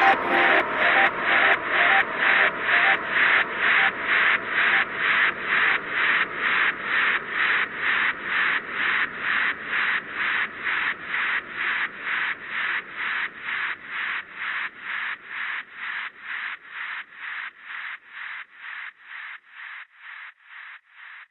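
Electronic music fade-out: a band of hissing noise pulsing evenly, a little over twice a second, growing slowly fainter with no beat or melody under it.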